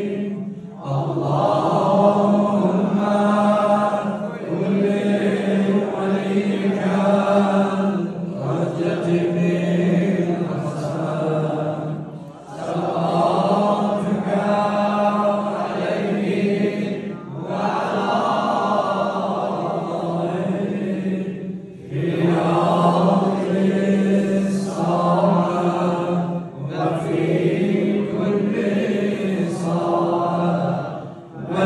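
A man chanting a prayer (dua) into a handheld microphone, amplified through loudspeakers, in long melodic phrases of about four to five seconds with short breaks for breath between them.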